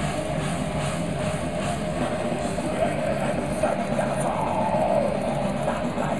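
Black metal band playing live, recorded from within the crowd: a dense, unbroken wall of distorted electric guitar and drums at a steady loudness.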